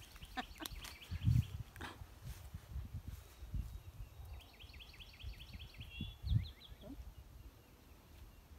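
A songbird singing: a few scattered chirps near the start, then a quick run of repeated chirps about halfway through. A couple of low thumps come through as well.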